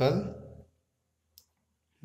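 A man's word trailing off, then near silence broken by one brief, faint tick of a ballpoint pen on paper about one and a half seconds in.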